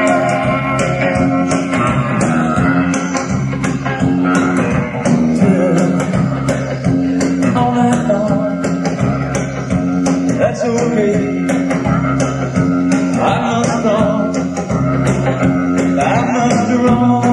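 Live rock band playing: electric guitar over a stepping bass line, with drums keeping time on a ticking cymbal.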